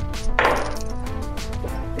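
Dice rolled onto a table, a short clattering of small hard impacts about half a second in, under steady background music.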